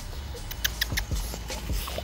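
A young bully dog's paws scuffling and clicking on an artificial-turf table, with a quick run of small clicks about half a second to a second in.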